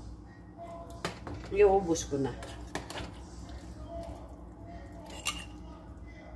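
Metal spoon stirring soup in a stainless steel pot, with a few sharp clinks of metal on the pot's rim and sides.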